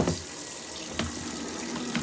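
Steady running water from a small portable washing machine as it drains during its spin cycle, with a light click about a second in.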